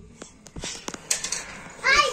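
Rustling and a few sharp clicks of the phone being handled, then near the end a baby's short, loud squeal that falls in pitch.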